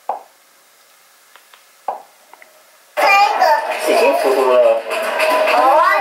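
A home video's soundtrack starts playing through the TV about three seconds in: a child's and other people's voices, a bit loud and thin, with no low end.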